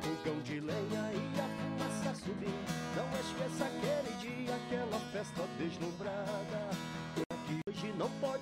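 A man singing in Portuguese while strumming an acoustic guitar, a live country-style gospel song. The sound cuts out twice for a moment near the end.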